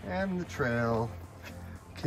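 A man's voice speaking twice in the first second over steady background music with guitar.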